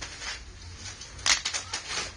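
Tumbled agate stones clicking against one another as a hand picks through a bowl of them: a few light clicks, then a quick cluster of sharper clicks past the middle.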